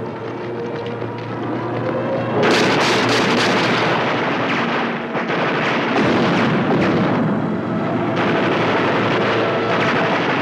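Soundtrack music, then from about two and a half seconds in, rapid machine-gun fire that runs on in long bursts to the end, briefly easing about five seconds in.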